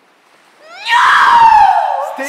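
A person's long, loud, high-pitched scream, starting a little under a second in and sliding steadily down in pitch as it goes on.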